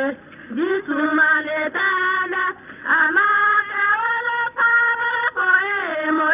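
Young women singing a traditional song for the water-offering ceremony, one melodic line of held, gliding notes with short breaks for breath. It is heard on an old recording that has no high end.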